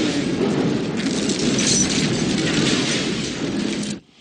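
Loud, dense rushing din with a low rumble underneath. It stays steady, then cuts off abruptly near the end.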